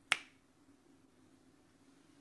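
A single sharp finger snap, once, right at the start.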